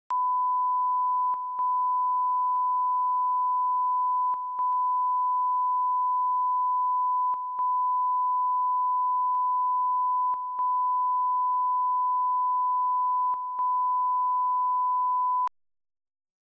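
Broadcast line-up test tone that goes with colour bars: one steady, loud, pure high tone, broken by a short gap about every three seconds, that cuts off suddenly near the end.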